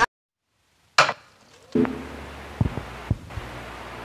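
Dead silence for about a second, then a sharp click, then the low hum of a stage sound system with a few faint knocks before the music starts.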